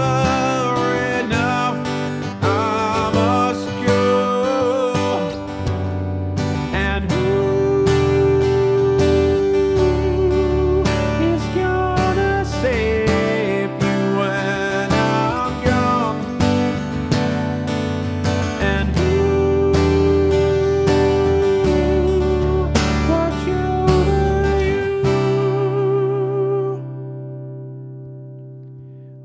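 Strummed acoustic guitar accompanying a male voice singing a slow ballad, with long held notes. Near the end the singing stops and a last chord rings out and fades.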